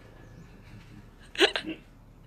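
A woman's short, sharp vocal burst about one and a half seconds in, followed at once by a smaller one, as she breaks into laughter.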